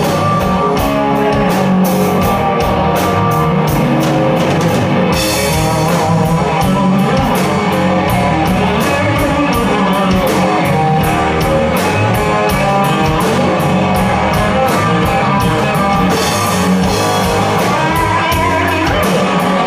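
Live blues-rock trio playing loudly without vocals: electric guitar (a Fender Stratocaster), bass guitar and drum kit, with a steady beat.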